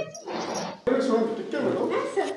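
A woman pleading in a strained, wordless voice, broken by a sharp click just before a second in, after which the sound comes in louder.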